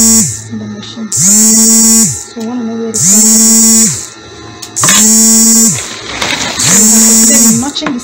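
Industrial sewing machine motor running in short bursts, about a second each and roughly every two seconds: a steady whine that climbs up to speed at the start of each run and winds down at its end, four runs in all.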